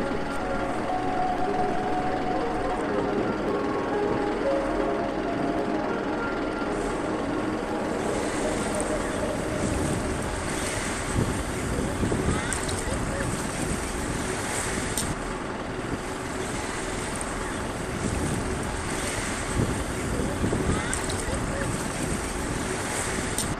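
Shallow sea water sloshing around the feet of someone wading, with wind on the microphone and voices in the background.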